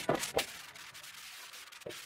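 Wind rushing over the microphone of an open-top convertible on the move: a steady hiss broken by a few short gusts, the sharpest ones right at the start and just before the end.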